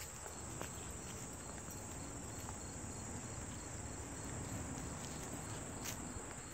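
Faint outdoor chorus of late-summer insects, crickets among them: a steady high trill with an evenly repeating chirp beneath it. A single sharp click comes near the end.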